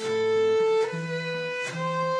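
Violin and acoustic guitar playing an instrumental passage: the violin holds a long note, moves to a new one just before a second in, and holds that, over lower guitar notes, with sharp accents near the middle and near the end.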